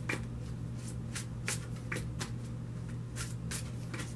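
A deck of tarot cards being shuffled by hand in an overhand shuffle: a steady run of short card slaps, about three a second, over a constant low hum.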